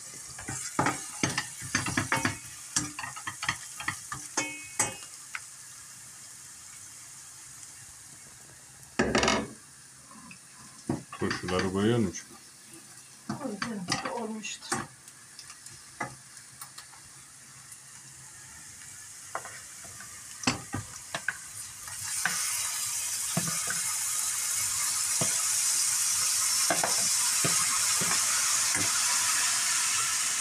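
Knocks, clinks and scrapes of pans, a glass lid and utensils on a gas hob for about twenty seconds, with one louder thud about nine seconds in. Then, about 22 seconds in, a steady loud sizzle starts as chopped pickled green beans go into hot oil with fried carrots and onion and are stirred, the start of a turşu kavurması (sautéed pickles).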